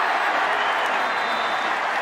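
Football stadium crowd cheering, a steady wash of noise, in response to a run that has just gained a first down.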